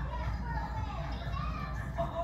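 Children's voices in the background, faint and indistinct.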